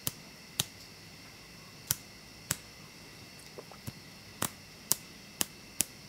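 A fingernail flicking the powder-coated head of a homemade strike-anywhere match, about ten sharp clicks at uneven intervals, some fainter than others. The match does not catch.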